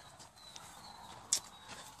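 Quiet pause filled with faint shuffling and rustling as a handheld camera is moved about under a truck, with one sharp click about a second and a half in.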